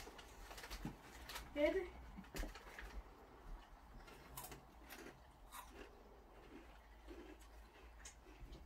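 Quiet chewing of crunchy rolled tortilla chips (Takis), a scattering of faint crunches, with one short spoken word about two seconds in.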